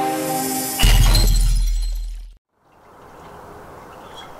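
Electronic intro music ends in a glass-shattering sound effect with a deep boom. It hits about a second in and dies away over about a second and a half. After a short silence, faint steady background ambience.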